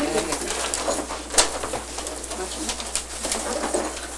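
Low murmured voices and the handling of wrapped gift boxes in a small room, with one sharp knock about a second and a half in.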